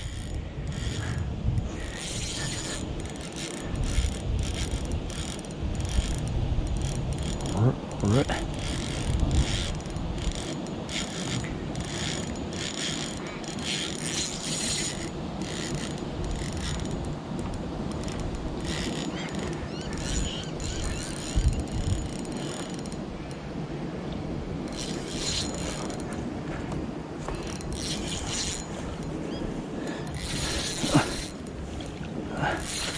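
Light spinning reel working under the load of a hooked mulloway on 8 lb line: rapid, continuous mechanical clicking and whirring from the reel as line is wound in and pulled against the drag.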